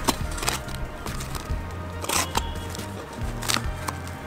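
Background music with a steady bass line, over about four short slicing strokes of a box cutter cutting through a cardboard box, the longest about halfway through.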